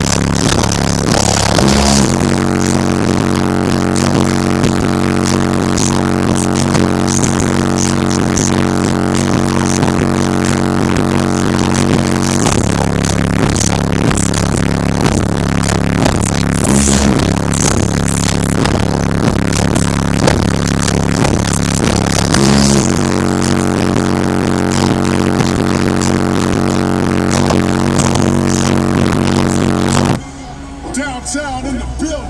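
Bass-heavy rap music played very loud on a car stereo with 12-inch subwoofers, heard inside the car. Long, held bass notes change about every ten seconds, and the sound is too loud for the camera's microphone to take cleanly.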